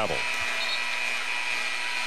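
Steady crowd noise filling a basketball arena, with a thin, steady high tone running through it.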